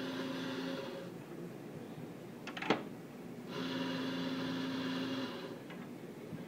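Espresso coffee grinder motor running in two bursts: the first cuts off about a second in, the second runs for about two seconds after the middle. A few sharp clicks come between the bursts.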